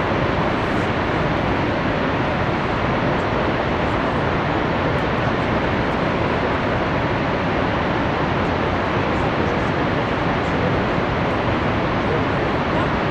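Niagara Falls' falling water making a loud, steady rush, an even noise that does not change.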